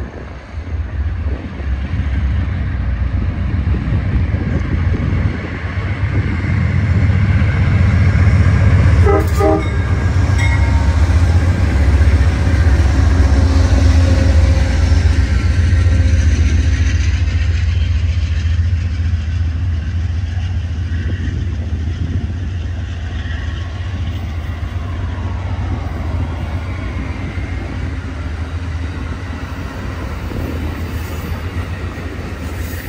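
Amtrak passenger train behind a diesel locomotive passing close by, a heavy rumble of engine and wheels on rail that builds to its loudest about a third of the way in and then eases as the cars roll past. A few short horn sounds come about nine seconds in.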